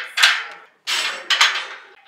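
Several sharp metal clanks from a steel squat rack and barbell, each ringing briefly, as the rack's hooks and upright are adjusted with the bar in them.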